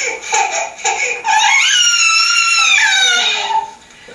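An infant's high-pitched fussing cries, heard over a room's speakers: a few short calls, then about a second in one long wail that rises and then falls. It is the baby's protest at the book being taken from him.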